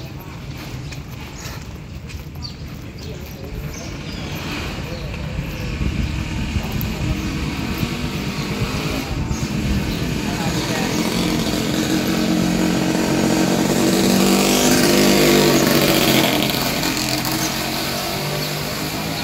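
A motor vehicle's engine growing steadily louder as it approaches, passing close by about three-quarters of the way through and then dropping away.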